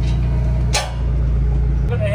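Forklift engine running steadily while lifting on a chain, with a brief sharp noise about three quarters of a second in and a change in the engine note near the end.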